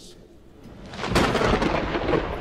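A sudden loud rumble like thunder swells up about a second in and carries on.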